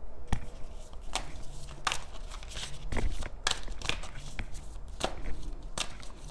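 A deck of tarot cards being shuffled by hand: a quick, irregular run of swishes and taps.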